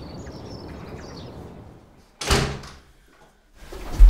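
A wooden front door shut with a single sharp thud about halfway through, after a steady background hiss.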